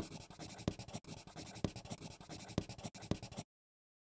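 Pen scratching across paper in quick, short strokes as a handwritten title is written out, stopping abruptly about three and a half seconds in.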